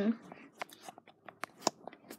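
Light clicks and ticks of handling noise, about a dozen at uneven intervals, short and sharp.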